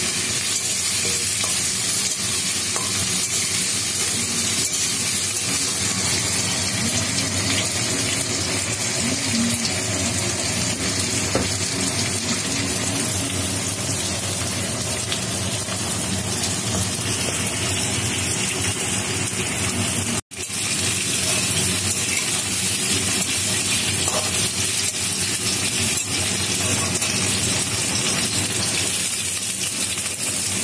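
Potato wedges and green vegetable pieces sizzling steadily as they fry in oil in a metal kadai, turned with a metal spatula. The sound cuts out for an instant about twenty seconds in.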